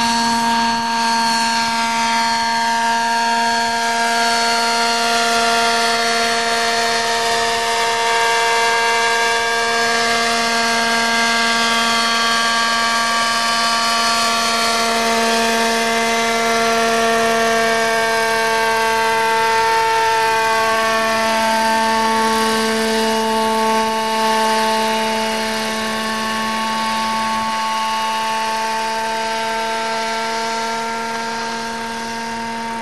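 RC scale model Lama SA 315B helicopter in flight: a steady motor and rotor hum with a higher whine whose pitch slowly drifts down and back up as the model moves about. The level eases slightly near the end.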